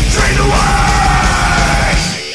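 A full band playing loud heavy metal, with distorted guitars and drums under a yelled vocal. The vocal slides up onto one long held note shortly after the start and sags slightly toward the end.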